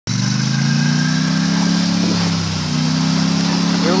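Polaris Sportsman 850 ATV engine running steadily as it tows a sled. It eases off slightly about halfway through, then picks up again.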